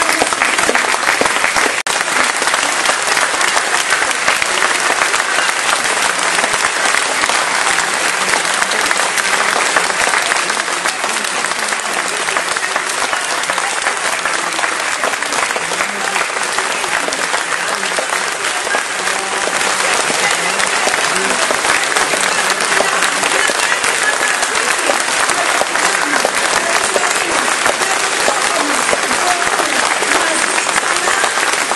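A large audience applauding continuously in a hall, a long, steady ovation with voices mixed into the clapping.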